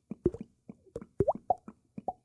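A quick, irregular series of mouth pops and clicks, several with a short rising pitch.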